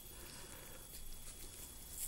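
Faint scraping and small clicks of a steel scalpel cutting through a preserved dogfish shark's stiff, rough, sandpaper-textured skin, over low room hiss.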